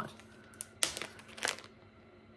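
Clear plastic wrapping around a wax melt crinkling as it is handled, a few short crackles in the middle of an otherwise quiet stretch.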